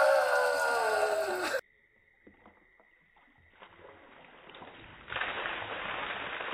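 A man's long yell, falling in pitch, cuts off suddenly about a second and a half in. After a near-silent gap, ice water from a bucket splashes over him from about five seconds in.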